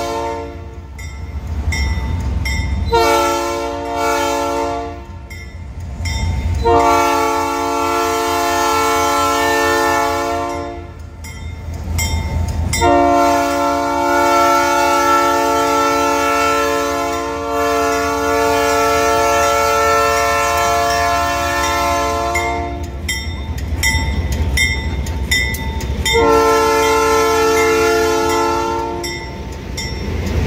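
Diesel locomotive's air horn sounding a series of blasts: one ending about a second in, then blasts of roughly two, four, ten and three seconds. Under them runs the steady low rumble of the locomotive's diesel engine as it rolls past close by.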